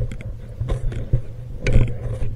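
Underwater handling noise on a diver's handheld camera: scattered small clicks and knocks over a low rumble, with a louder rushing burst near the end.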